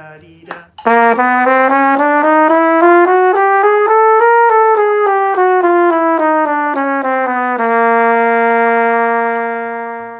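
Flugelhorn playing a slurred chromatic scale in even eighth-note triplets, one octave from written low C up to middle C and back down, ending on a long held low C that fades near the end. A metronome clicks the beat at 70 bpm underneath.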